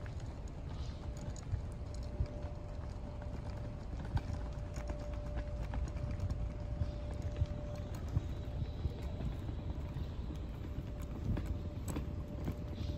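Outdoor walking sounds: scattered light footsteps over a low wind rumble on the microphone, with a faint steady hum underneath.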